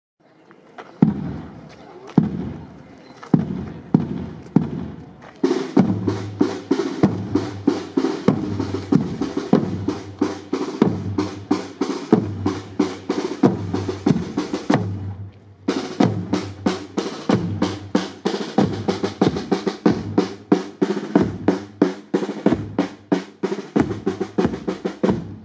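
Marching band's drum section beating a parade cadence: single bass drum strokes about once a second, then snare drums come in after about five seconds with rapid beats and rolls over the bass drum. The rhythm stops briefly about fifteen seconds in and starts again.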